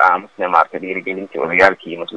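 Speech only: one voice talking in quick phrases with brief pauses between them.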